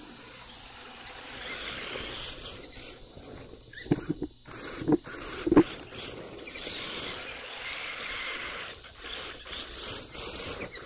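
An RC drift car's tyres sliding and scrubbing on an asphalt driveway, a hissing scrape that swells and fades as the car drifts around. A few sharp knocks come about four to six seconds in, the loudest near the middle.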